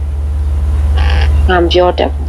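A woman narrating an audiobook in Burmese. Her voice resumes about one and a half seconds in, after a short breathy hiss, over a steady low hum.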